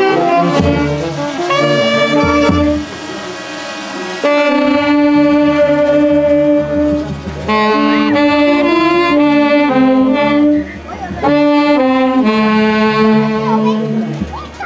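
Andean orquesta típica of saxophones and violin playing a processional tune, the saxophones carrying the melody in held notes and phrases, with a few bass drum beats in the first seconds.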